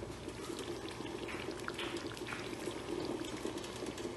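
Thick tomato chicken stew simmering in a pot, bubbling steadily with small pops.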